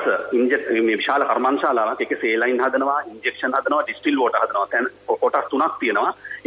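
Continuous Sinhala speech on a radio talk programme, sounding narrow, with nothing above about 4 kHz, and with only brief pauses between phrases.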